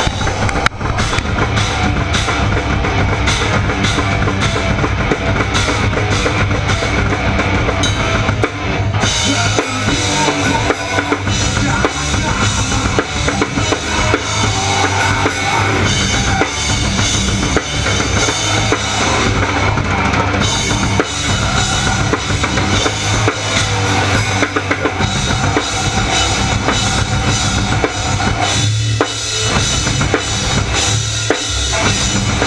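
Live band playing loudly on stage, the drum kit loudest, with bass drum, snare and cymbals driving over electric guitar.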